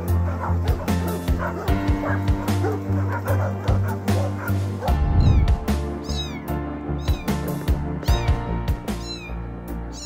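Background music under dogs barking in the first half, then, after about five seconds, a cat in the water meowing repeatedly in short, high, falling calls.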